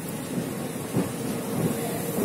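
Steady rumbling background noise of an escalator and the metro station around it, with a couple of faint knocks.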